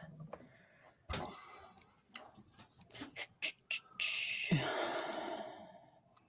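A few quiet, separate computer clicks from a host sending a message, then a long breathy exhale near the end.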